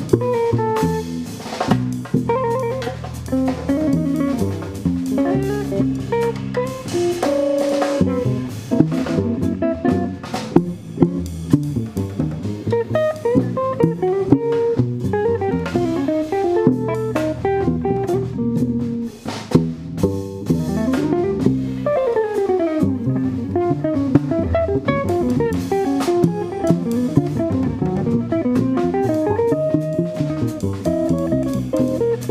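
Live modern jazz: a hollow-body electric guitar playing fast single-note lines, with a quick descending run about two-thirds of the way through, over plucked double bass and a drum kit with cymbals.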